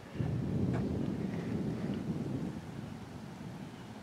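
Low rumbling noise that starts suddenly and fades away over a few seconds.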